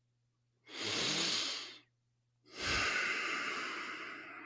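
A man breathing audibly into a close microphone: two long breaths, the first lasting about a second, the second starting about halfway through and trailing off slowly.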